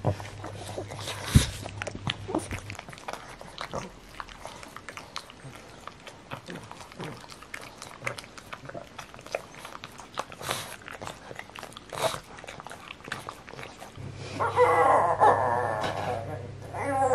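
Black pug licking and smacking its mouth: a long run of small wet clicks and smacks. Near the end a louder, drawn-out voice-like sound comes in.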